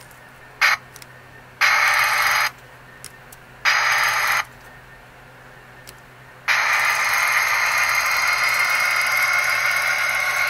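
Model diesel locomotive's motor whirring in stop-start bursts: a brief blip, two short runs about a second each, then running steadily for the last few seconds. It runs only while the turnout's point rail is pressed against its contact, the sign of a poor electrical contact at the Shinohara turnout's points that leaves the track without power.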